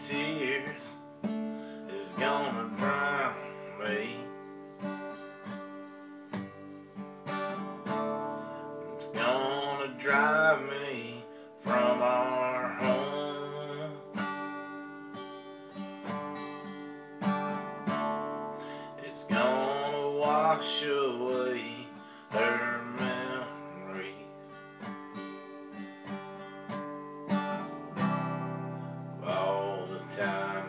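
Acoustic guitar strummed through a country song, with a man's singing voice coming in over it in several long phrases.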